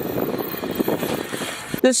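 Steady rushing outdoor noise with a few faint knocks, with no distinct chain rattle or brake squeal standing out.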